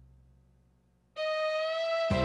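Lowrey electronic organ: a held chord dies away, then about a second in a single sustained note sounds, sliding up into pitch as it starts: the organ's glide effect, which drops a note a half step and lets it slide back.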